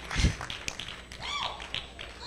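A single heavy thump about a quarter second in, followed by a few sharp taps and a brief voice about halfway through.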